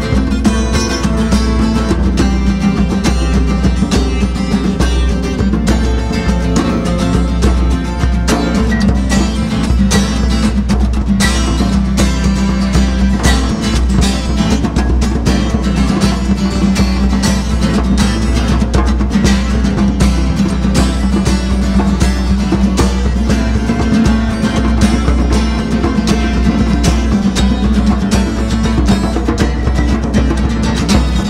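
Live instrumental music: a strummed acoustic guitar with two djembes played by hand, in a steady, busy rhythm.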